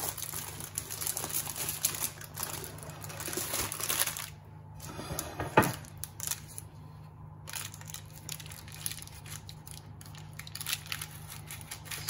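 Baking paper crinkling and rustling as a freshly baked ring of buns is handled and lifted out of a glass baking dish, with one sharp knock about five and a half seconds in.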